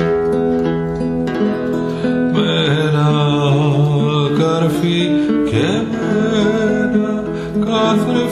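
Acoustic guitar played with a solo voice, an amateur guitar-and-voice rendition of a Greek song, with a long wavering held note in the middle.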